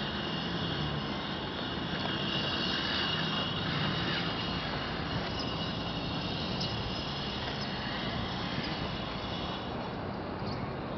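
A distant engine droning steadily, with a constant high hiss and no breaks.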